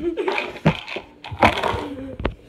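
Indistinct voices, a child's among them, with two breathy, hissing bursts.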